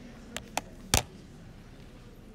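Three short, sharp clicks, the third and loudest about a second in, over faint low room noise.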